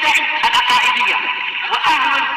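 A voice chanting in Arabic with a wavering, sung pitch, as a vocal intro.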